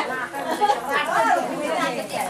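Chatter of several people talking over one another, with no single clear speaker.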